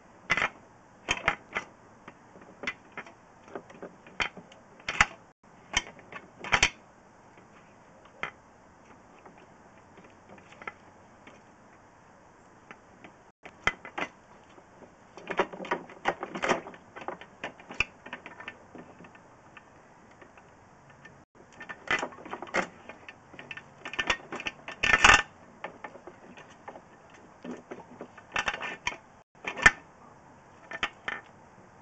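Irregular clicks and knocks, coming in bunches, as a drain camera's push cable and snare are worked back and forth in a toilet bowl.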